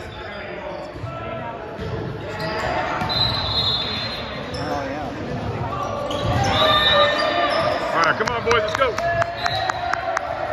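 Indoor volleyball play in a gym: the ball being struck, sneakers squeaking on the hardwood floor and players' and spectators' voices echoing in the hall. A quick run of sharp slaps comes near the end.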